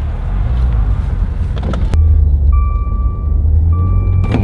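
Maserati car running, heard from inside the cabin as a heavy low rumble that grows stronger about halfway through. A sharp click comes near the middle, followed by two long, steady electronic warning beeps from the car.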